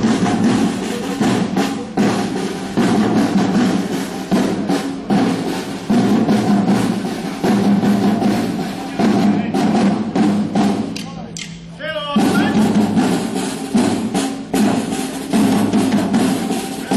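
Marching field drums of a historical military drum corps playing a loud march beat. The drumming eases off briefly about ten seconds in and comes back in full about a second later.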